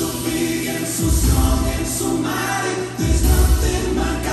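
Music: a group of voices singing a gospel-style song over instrumental backing with a bass line.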